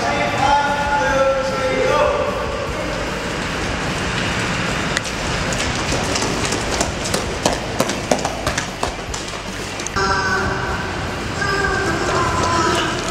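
Several people yelling in long held cries, then running footsteps clattering on a concrete floor with a hollow echo, and yelling again near the end.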